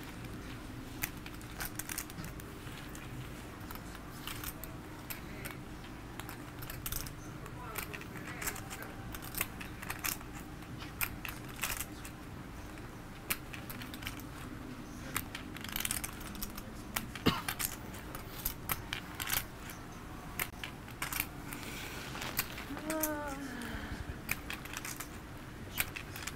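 Poker chips clicking and clacking as they are fiddled with at the table: many sharp, irregular clicks throughout. Faint murmured voices come in briefly near the end.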